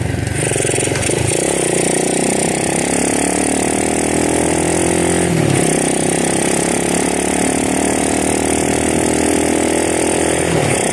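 Honda CT70 minibike's small single-cylinder four-stroke engine running under way while riding, with a brief dip and recovery in pitch about halfway through.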